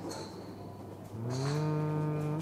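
A man's drawn-out hum, like a thoughtful 'hmmm', starting about a second in. The pitch rises a little, then holds steady.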